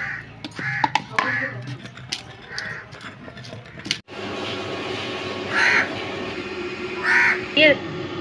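Wooden pestle knocking in a stone mortar as chutney is pounded, a sharp knock roughly every half second, with crows cawing again and again. After a sudden break about four seconds in, the crows keep calling over a steady hum.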